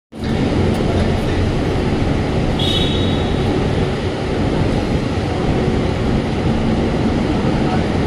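Steady low rumble of vehicle noise, with a brief high-pitched beep-like tone about three seconds in.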